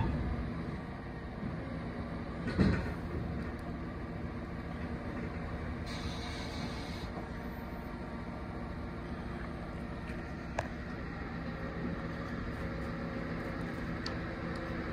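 A heavy vehicle engine running steadily at constant speed while a derelict Centurion tank is hauled onto a low-loader trailer. There is a short loud noise about two and a half seconds in, and a sharp click near ten and a half seconds.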